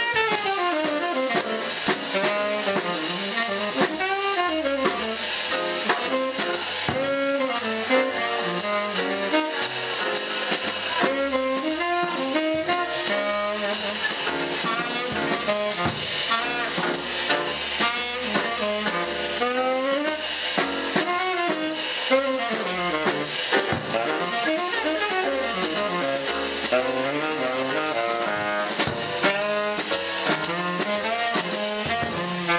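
Live jazz quartet playing: a tenor saxophone solos in a continuous, moving melodic line over piano, upright bass and drum kit.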